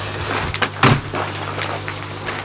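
A door shutting with a single thump a little under a second in, over a steady low hum.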